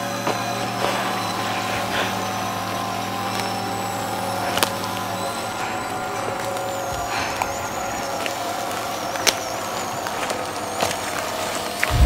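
Horror film score: a steady drone of held, layered tones, with a few sharp hits cutting through, about four and a half seconds in and about nine seconds in.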